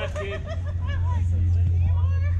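Indistinct chatter of several people talking at once, over a steady low rumble that grows louder about halfway through.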